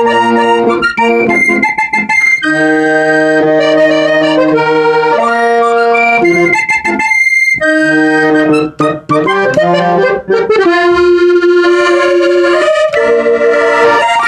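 Hohner diatonic button accordion playing a vallenato melody over sustained chords, its bellows pushing and pulling between phrases.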